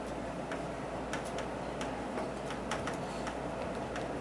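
Chalk tapping on a chalkboard while words are written: a run of sharp, irregularly spaced ticks, about three a second.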